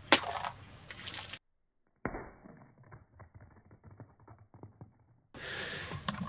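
A raw egg thrown in at a shallow angle hitting concrete and cracking open with one sharp, loud impact. After a short silent gap comes a muffled run of faint small ticks.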